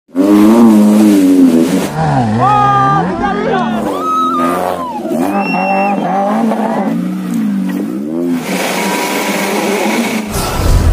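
Off-road 4x4 engines revving hard under load, pitch rising and falling repeatedly as the vehicles claw up dirt banks and through mud, with spectators shouting.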